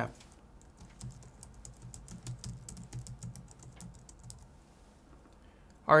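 Typing on a computer keyboard: a run of quick, light keystrokes lasting about three and a half seconds, stopping well before the end.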